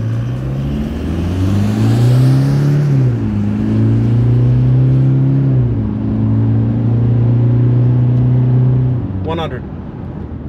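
Toyota Hilux Rogue's 2.8-litre four-cylinder turbo-diesel accelerating hard from a standstill in a full-throttle 0–100 km/h run. The automatic gearbox upshifts twice, about three and six seconds in, the engine note dropping at each change and then climbing again. The engine backs off about nine seconds in.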